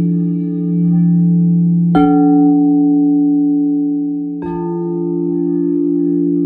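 Crystal singing bowls ringing together in steady, overlapping sustained tones. A bowl is struck about two seconds in and another about four and a half seconds in, each adding a fresh tone that rings on under the others.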